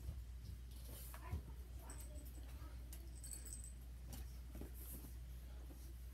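Faint handling sounds: a few light clicks and rustles as a plastic spoon is pressed into a lump of clay on a wooden board, over a steady low hum.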